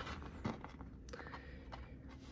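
Quiet handling of a plastic action figure in the hands, with a few soft clicks.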